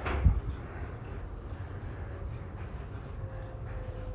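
Quiet background room noise with a soft low thump just after the start and a faint steady hum from about halfway on. There is no distinct kitchen sound.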